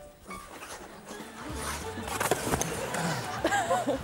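Background music under the scrape of ice skate blades and a few sharp knocks about two seconds in, as a skater in hockey pads falls onto the ice.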